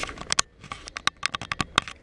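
Irregular series of about a dozen sharp clicks and taps, handling noise from a hand touching the helmet-mounted action camera.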